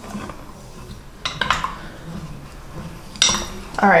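Wooden spoon stirring fruit-filled sangria in a glass pitcher, knocking and clinking against the glass in two short spells, about a second in and again near the end.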